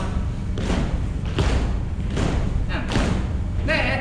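Dull thumps of dancers' feet stepping and stomping on a studio floor, about one every three-quarters of a second, over a steady low rumble. A voice starts speaking near the end.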